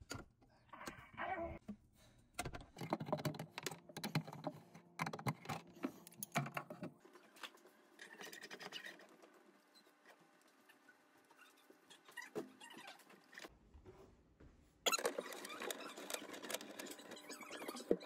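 Irregular small clicks, knocks and scrapes of hand tools and fingers working on a faucet's mounting hardware under a kitchen sink, with a denser stretch of rustling and clicking near the end.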